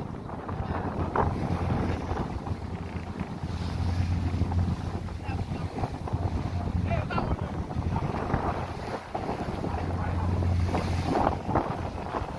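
Wind gusting over the microphone on the deck of a wooden sailboat under way, with choppy sea washing along the hull; the low rumble swells in gusts a few seconds in and again near the end.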